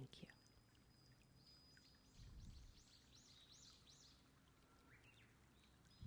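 Near silence: room tone, with a faint run of short high chirps about halfway through.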